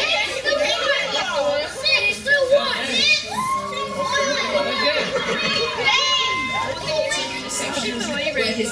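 A roomful of children and teenagers calling out and shouting over one another, many excited voices overlapping with no pause.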